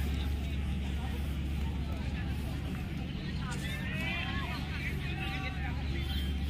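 Outdoor crowd murmur and distant voices over a steady low hum, with a run of high, wavering sounds in the second half.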